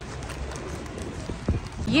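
Busy city street noise heard while walking on a pavement, with one sharp knock about one and a half seconds in. A woman starts speaking right at the end.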